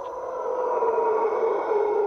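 Howler monkeys howling: one long, rough, steady roar that swells slightly after it begins.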